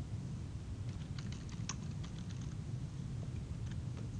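Computer keyboard keystrokes, a quick run of light taps starting about a second in and lasting about two seconds, as a short phrase is typed.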